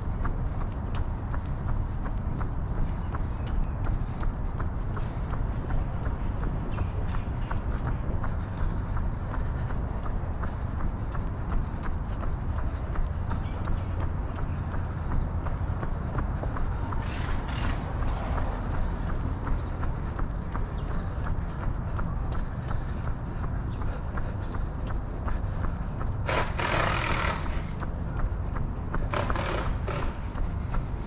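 Running footsteps on a concrete sidewalk, an even rhythm of nearly three footfalls a second over a steady low rumble. A short rush of hissing noise comes about 17 seconds in, and twice more near the end.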